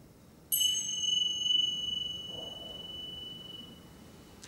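A small high-pitched bell struck once about half a second in, ringing with several bright overtones that die away over about three seconds.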